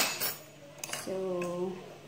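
A few sharp clicks and knocks as a plastic yogurt tub is handled at the counter, the first and loudest right at the start and weaker ones within the first second. A woman then says a single word.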